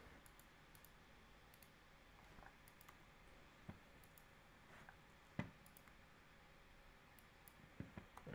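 Near silence with a few faint, scattered clicks from a computer keyboard and mouse being worked, the sharpest about five and a half seconds in.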